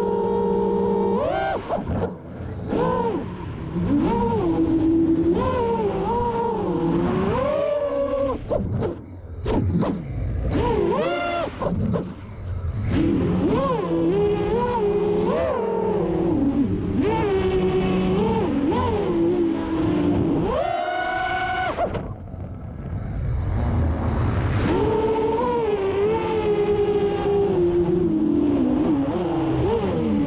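Brushless motors and propellers of a six-inch FPV quad, heard from its onboard GoPro, whining with a pitch that rises and falls constantly with the throttle. The sound drops away in several short dips where the throttle is chopped for dives, the longest about two-thirds of the way in.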